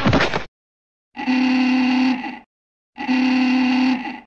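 Two identical blasts of a steady, horn-like tone, each about a second and a quarter long, with a short gap between them. Before them, the tail of a loud sweep falling in pitch cuts off about half a second in.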